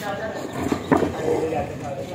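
People talking in the background, not picked up as words, with a single sharp knock about a second in.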